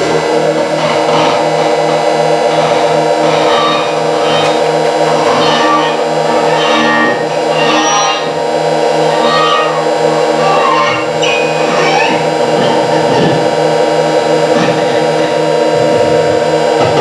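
Experimental improvised noise music: a dense drone of many steady, layered computer-synthesized tones, with scratchy, scraping bowed acoustic guitar sounds flickering over it in short flurries.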